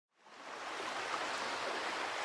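Small waves washing on a shore: a steady rushing sound that fades in from silence just after the start.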